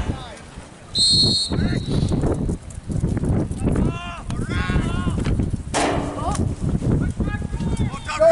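One short, high referee's whistle blast about a second in, over players and spectators shouting across an outdoor lacrosse field.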